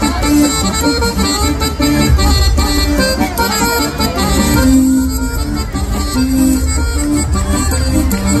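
Amplified traditional folk dance music led by an accordion, played over stage loudspeakers, with a steady low beat under held melody notes.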